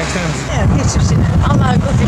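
Speech: a short spoken exchange in Turkish between a reporter and a woman. Under it runs a loud low rumble that grows about half a second in.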